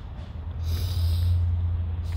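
A woman sniffing hard through her nose once, lasting about a second, as she holds back tears. A low steady rumble runs underneath.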